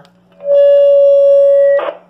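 A steady single-pitched electronic tone from an amateur two-way radio, held about a second and a half, then cut off with a brief hiss of radio static.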